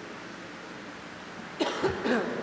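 Quiet church room tone, then near the end a person's short, loud burst of coughing.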